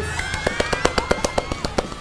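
Edited-in sound effect: a rapid run of sharp cracks, about six or seven a second, under a thin whistle-like tone that slowly rises. It marks an on-screen score reveal.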